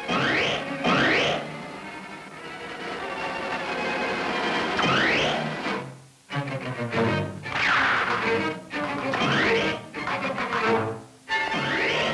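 Dramatic orchestral score led by strings, with quick rising sweeps that recur every few seconds and abrupt breaks between phrases.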